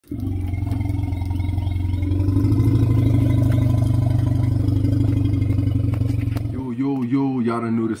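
Intro sound effect of a deep, steady engine-like rumble with a fast even pulse, rising slightly in pitch at the start and cutting off suddenly about six and a half seconds in. A man's voice begins right after.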